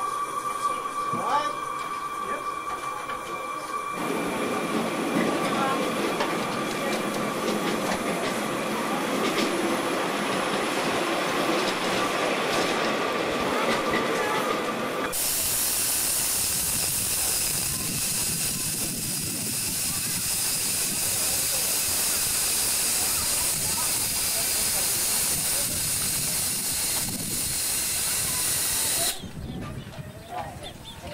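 Steam hissing steadily from a miniature live-steam locomotive. The hiss starts abruptly about halfway through and cuts off suddenly near the end. Before it comes a lower, rougher rushing noise.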